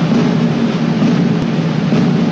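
Sustained orchestral drum roll in title music, a steady loud rumble with no melody over it.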